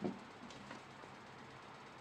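Faint handling of fabric and a foam bra-cup pad on a tabletop: a soft knock right at the start and a couple of light ticks, then low room hiss.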